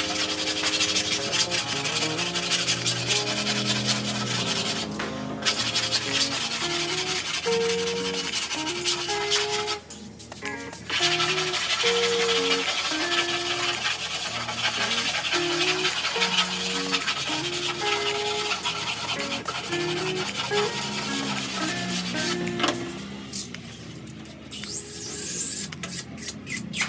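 Hand sanding with a sanding block, rubbed back and forth along a wooden board in long strokes, with background music throughout. The rubbing breaks off briefly about five and ten seconds in and dies down near the end.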